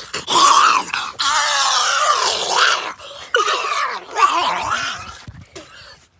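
A boy retching with loud, strained groans, in three long heaves.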